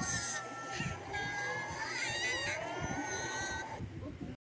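Soundtrack of a children's TV cartoon heard through a TV speaker: background music with high, gliding, squeaky character sounds.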